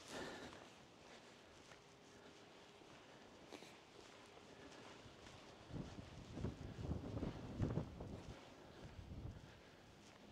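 Wind buffeting the microphone in irregular low gusts from about six seconds in until near the end, over faint outdoor background.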